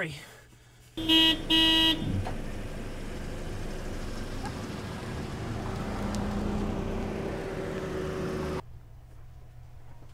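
Two short, loud blasts of one pitched tone about a second in, then a steady wash of street and traffic noise that cuts off suddenly near the end.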